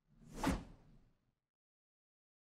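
A single whoosh sound effect with a low rumble under it, swelling to a sharp peak about half a second in and fading out within the next second: a logo-sting transition.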